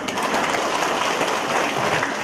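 A congregation applauding: dense, steady clapping.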